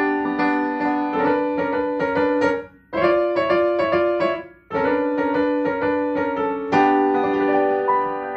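Upright piano played in quick struck chords, breaking off twice for a moment, then a final chord about seven seconds in that is held and left to ring out, closing the piece.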